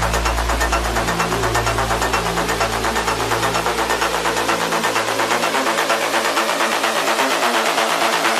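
Techno DJ mix: fast, even percussion over a deep bass line. The low bass fades away through the second half, leaving the percussion and mid-range parts.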